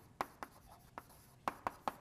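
Chalk writing on a blackboard: about six sharp, irregular taps of the chalk with faint scraping between strokes.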